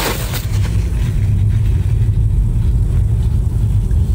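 Steady low rumble of a car driving along, engine and road noise heard from inside the cabin.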